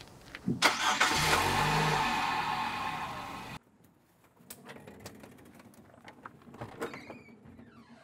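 A car engine running loudly for about three seconds and then cut off abruptly, followed by quieter scattered sounds.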